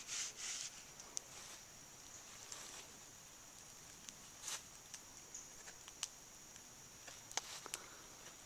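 Faint woodland ambience: a steady high-pitched insect drone throughout, with a few seconds of rustling at the start and scattered light clicks and crackles later, like footsteps through grass and twigs.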